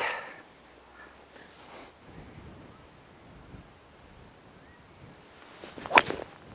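Quiet open-air background while a golfer stands over the ball, then near the end one sharp crack as the club strikes the golf ball off the tee.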